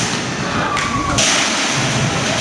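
Loud drumming from a Polynesian drum ensemble, a dense run of thudding beats.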